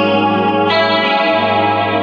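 Electric guitar played through an effects pedalboard: a ringing chord, with a new chord struck about a third of the way in.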